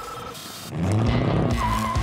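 A short burst of static-like hiss, then from a bit under a second in a car engine running loud and hard, with a wavering squeal near the end, typical of a performance car launching with tyre squeal.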